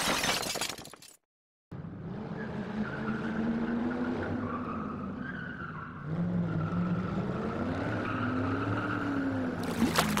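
Outro sound effect of a car engine with tyres squealing, its pitch wavering slowly up and down, starting about a second and a half in and changing at about six seconds.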